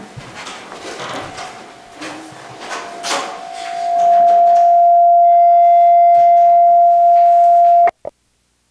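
Microphone feedback in the sound system: one steady high howl that swells over about a second from around three seconds in, holds loud, then cuts off suddenly near the end.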